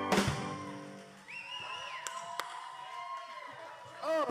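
Live band ending a song: a sustained chord is cut off by a loud final hit of drums and cymbals right at the start, ringing out and fading over about a second. A faint held note lingers through the quieter rest.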